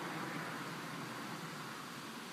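Steady background hiss with no distinct event.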